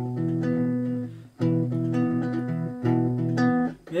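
Three-string cigar box guitar playing three chords, each struck once and left to ring for about a second and a half before the next.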